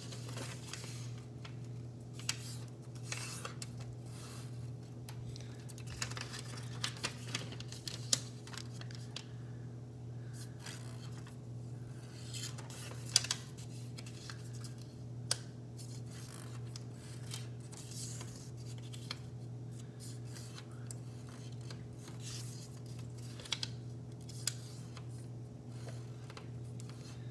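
A square of origami paper being folded and creased by hand into blintz folds: scattered rustles and short sharp crackles as the paper is turned and pressed flat, over a steady low hum.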